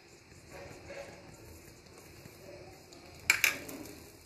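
A metal spoon knocking twice in quick succession against a stainless steel bowl as flour is added to a stuffing mixture, with quiet handling sounds around it.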